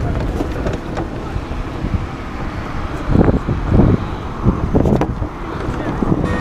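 Wind buffeting and rumbling on a camera microphone held against a jacket, over street traffic noise, with louder surges about halfway through.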